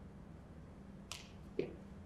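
Two sharp clicks about half a second apart, the second duller, over a low steady hum in a quiet hall.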